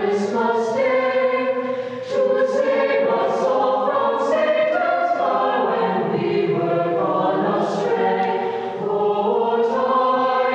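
Mixed choir of high-school voices singing in harmony, holding chords with crisp consonants, with a brief break between phrases about two seconds in.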